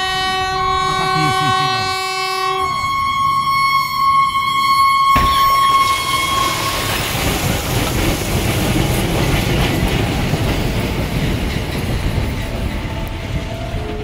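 A locomotive's horn sounds a long, steady multi-tone blast as it closes on a van stopped on a level crossing, then about five seconds in the collision hits suddenly. A loud rushing, scraping noise follows as the locomotive shoves the crumpled van along the track.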